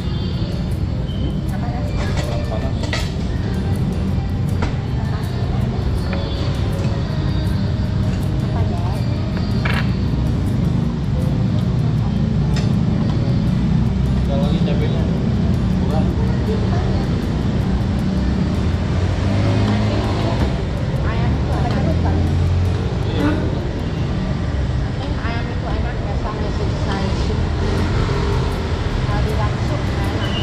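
Restaurant dining-room ambience: a steady low rumble of road traffic under background voices and faint music, with occasional light clinks of cutlery on a plate.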